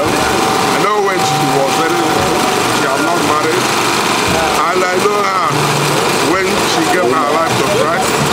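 A man speaking steadily into a microphone, with a faint steady hum in the background.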